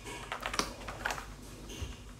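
A few quiet clicks and taps as an E-DRA EK375 Pro mechanical keyboard is handled, turned over and set down on a desk mat.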